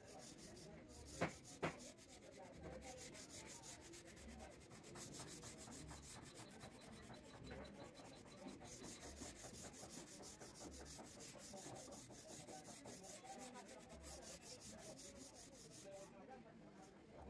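Two sharp wooden knocks about a second in, then faint, steady, scratchy rubbing of wood on wood as chair parts are handled and fitted.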